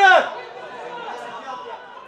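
One loud, high-pitched shout right at the start, then fainter scattered calling voices at a football match.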